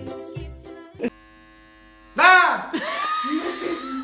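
Electric hair clippers running with a steady buzz, joined about two seconds in by a loud voice with swooping pitch. The first second is the tail of children's music.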